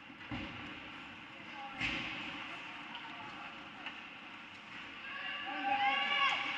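Ice hockey rink sound: indistinct voices echoing in the arena, with two sharp knocks of play on the ice, about a third of a second in and just under two seconds in. Near the end, music with brass-like tones begins.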